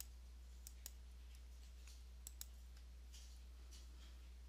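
Near silence over a low steady hum, with faint computer mouse clicks: one at the start, a quick pair about a second in and another pair near two and a half seconds.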